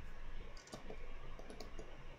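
Computer keyboard keys clicking, a scatter of short quick presses: Command-G keystrokes stepping to the next find-in-page match.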